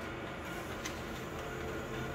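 Konica Minolta office copier running steadily as it prints a sheet out into the output tray.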